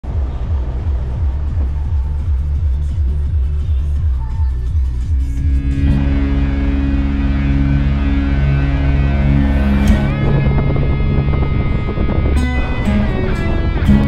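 Background music: a throbbing low beat at first, with sustained chords coming in about six seconds in, building toward a guitar-driven rock track.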